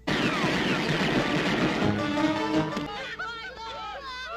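Edited-in transition sound effect: a sudden loud crash-like burst with falling whooshing sweeps that dies away over about three seconds, laid over music, which carries on with short chirping notes near the end.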